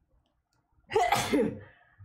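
A woman sneezing once, loud and sudden, about a second in.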